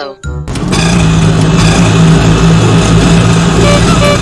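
Small vehicle engine running steadily, starting about half a second in: a driving sound effect for the three-wheeled rickshaw mini excavator.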